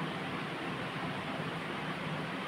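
Steady hiss of background room noise, with no distinct event.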